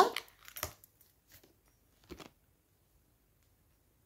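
A few faint, short clicks and rustles of metal earrings being handled and fitted, about half a second in and again about two seconds in, then near silence.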